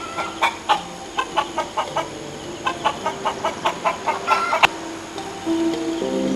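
A hen clucking and squawking in quick short calls, about five a second, with a brief pause partway and a last louder squawk that cuts off near the end. Background music plays underneath.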